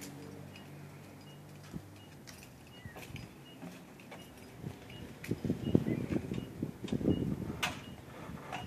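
Scattered faint clicks, then a cluster of low knocks and thumps from about halfway in as the driver steps up into the cab of a UPS package truck.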